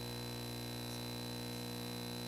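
Steady electrical hum and buzz, made of a stack of low even tones with a thin high whine above them. It does not change in level or pitch.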